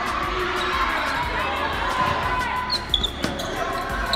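Basketball game in a school gymnasium: the ball bouncing on the hardwood floor amid crowd chatter from the bleachers.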